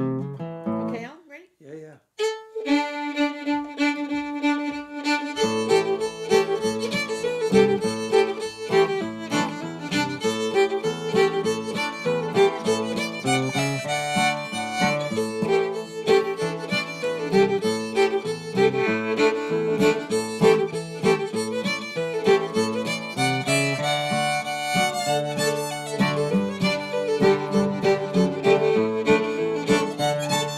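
Fiddle and strummed acoustic guitar playing an old-time tune in D. After a short gap, the fiddle holds one long note for about three seconds, then runs into a quick melody over the guitar's chords.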